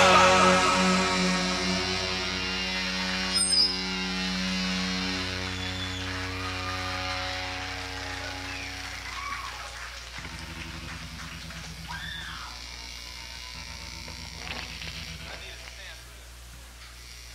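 A distorted electric-guitar chord rings out through the amplifiers at the end of a live punk song and slowly fades over about ten seconds, leaving a steady amplifier hum. A few short calls from the audience come through later.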